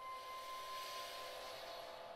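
Soft contemporary chamber music for flute and ensemble: a quiet held note fades away about a second and a half in, while a breathy hiss swells and dies down.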